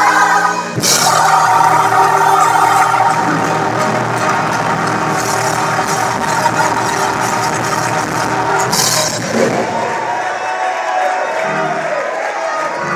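Church choir singing a gospel song with musical accompaniment, with a few sharp high strokes in the music near the start and about nine seconds in. The sound eases off slightly in the last couple of seconds.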